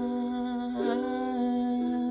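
A woman's voice holding a long sung note over a ukulele played on a G chord, with a fresh attack about a second in.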